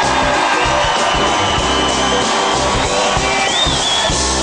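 Live boogie-woogie band music with a steady beat; a high note is held for about two seconds in the middle.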